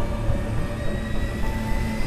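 Background music bed in a pause of the narration: a low, steady drone, with a thin held tone entering near the end.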